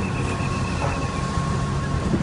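Road traffic noise: vehicle engines running in a slow-moving queue, a steady low rumble with a thin steady high tone over it.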